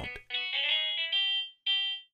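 GarageBand's 'Classic Clean' electric guitar software instrument playing back a short programmed melody of single notes, one after another, with a brief gap before the last note.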